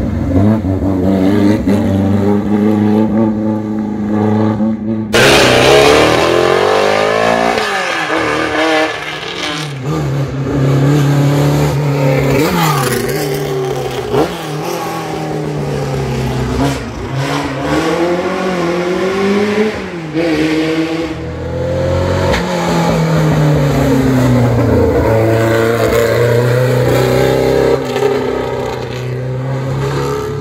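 Racing car engines at full throttle climbing a hill, the revs rising and dropping with gear changes. About five seconds in the sound turns suddenly louder and brighter, then falls in pitch as a car passes close.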